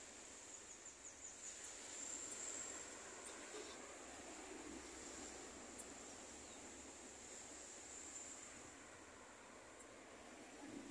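Faint road traffic passing by, with a steady high-pitched insect drone held over it.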